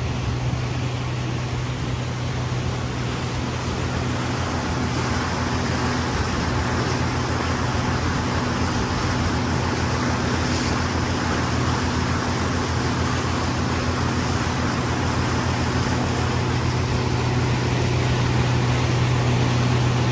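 Mercury outboard motor running steadily at speed, a low steady hum under the rush of wind and churning wake water.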